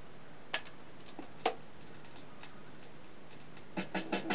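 A portable record changer cycling: a few sharp mechanical clicks as the tonearm swings across and lowers, over a faint steady low hum. Near the end the stylus touches down and a quick run of clicks from the lead-in groove starts.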